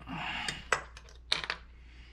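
Small metal clay-sculpting tools clinking as they are handled, with a short rustle at the start and several sharp clicks, the loudest about a second in and a quick pair near the end.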